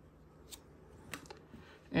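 Light clicks and snaps of 1995 Topps Stadium Club baseball cards being slid and flipped by hand, a couple of faint ones about half a second and a second in.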